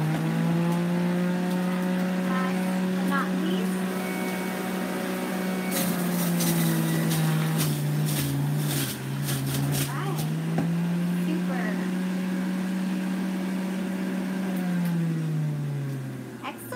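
Electric centrifugal juicer running with a steady motor whine that sags in pitch each time celery is pushed down the feed chute and picks back up as it clears, with crackling as the stalks are shredded. Near the end the motor pitch falls away as it winds down.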